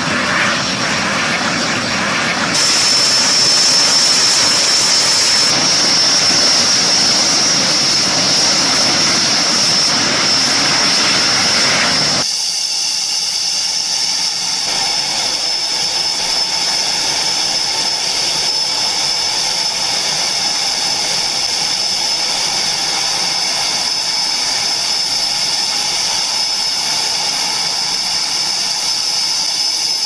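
Turbojet engine of a truck-mounted decontamination machine running steadily at high power, blasting its exhaust and spray over passing armoured vehicles, with a loud roar and a strong high whine. About twelve seconds in the sound changes abruptly to a thinner, high-pitched turbine whine.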